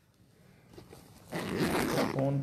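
Near silence, then about a second and a half in, a loud rustling scrape of the recording phone being handled and moved, rubbing against its microphone.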